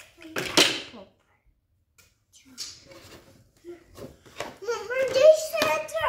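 A toddler's voice babbling and speaking, loudest in the last second and a half. A brief noisy burst about half a second in, likely handling noise from the plastic toy parts and cardboard box.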